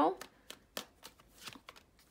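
A deck of tarot cards being shuffled by hand and cards drawn from it, heard as a few soft, scattered flicks and taps. It follows the end of a spoken word at the very start.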